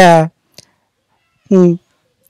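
A man's speech in Tamil, close to the microphone: a word trailing off, a faint click, then a short syllable after a pause.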